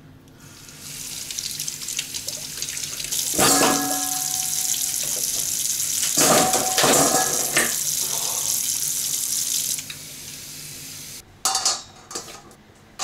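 Kitchen tap running into a stainless steel bowl in the sink, with the bowl knocking and ringing a few times as it is handled. The water shuts off near the end.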